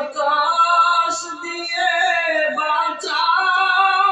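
A man singing a Bangla gojol (Islamic devotional song) in long held notes that slide up and down in pitch, with a short break about three seconds in.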